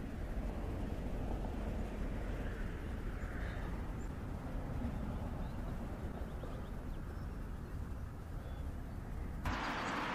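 Quiet, steady low rumble of outdoor background noise with no distinct event, ending abruptly near the end.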